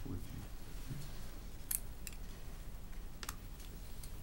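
Quiet meeting-room tone with a steady low hum and two faint clicks, one a little under halfway through and one near the end, like small handling noises of papers or a pen.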